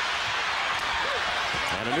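Steady arena crowd noise during live basketball play, with the ball bouncing on the hardwood court. A few short high squeaks, typical of sneakers on the court, come near the end.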